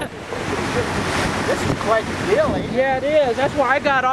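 Wind buffeting the microphone, a steady rough rush. About halfway through, a voice starts talking or exclaiming over it.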